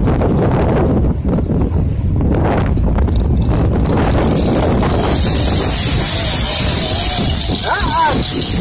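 Strong wind buffeting the microphone, a constant heavy low rumble with gusty crackles in the first half. About halfway in, a thin steady high whine joins it.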